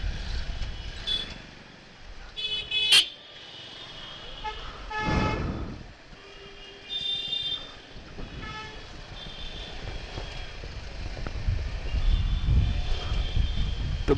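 Motorcycle riding slowly through street traffic: a low rumble of engine and wind, with short, high vehicle horn toots several times. A longer horn sounds about five seconds in, and a sharp knock comes about three seconds in.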